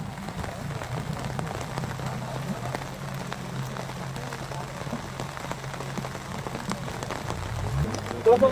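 Heavy rain and floodwater: a steady hiss with a fine patter, over a low steady hum.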